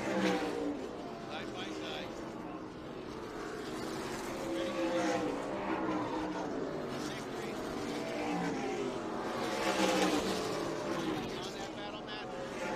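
A pack of NASCAR K&N Pro Series stock cars' V8 engines racing around a short oval track. The engine pitch falls and rises again and again as the cars lift through the turns and accelerate out of them.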